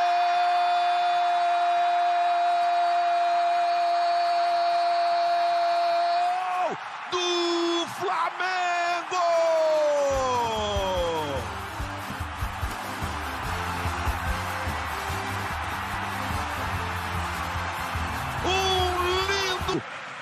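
A Portuguese-speaking football narrator's drawn-out goal cry, held on one pitch for about six seconds, then a few more shouted words ending in a falling glide. From about ten seconds in, music with a stepping bass line plays over stadium crowd noise.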